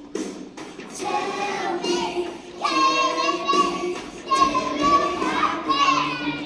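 A group of young children singing in high voices, holding some notes, with backing music underneath.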